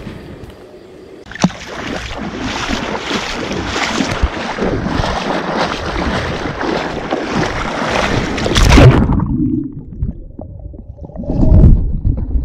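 Lake water splashing and sloshing close around a camera held at the surface as a person moves through the water. About nine seconds in, the sound abruptly turns muffled and low, and there are loud dull thumps near the end.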